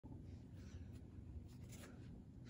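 Near-silent room tone with a few faint rustles of handling, one about half a second in and another near the end.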